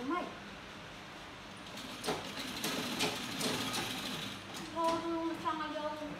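Old treadle sewing machine running, a fast mechanical clatter of stitching from about two seconds in for roughly two and a half seconds. A short rising squeak at the very start and a voice near the end.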